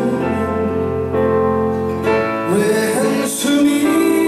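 Live band playing a slow Korean pop ballad: sustained chords over a long low bass note, with a male lead voice singing into a microphone. A new wavering vocal phrase starts about halfway through.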